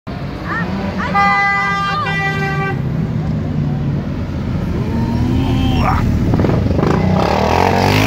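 A vehicle horn sounds steadily for about a second and a half, with short sweeping chirps around it, over the running engines of a police car and motorcycles passing in a slow parade. The motorcycle engines grow louder near the end as the bikes come by.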